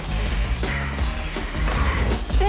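Soundtrack music with a heavy bass.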